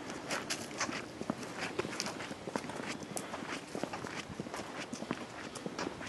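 Footsteps of a few people walking together along a forest trail: a quick, irregular run of steps.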